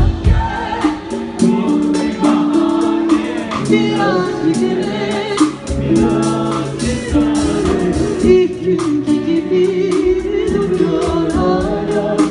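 A woman singing live into a microphone, backed by a band, with a steady drum beat under the melody.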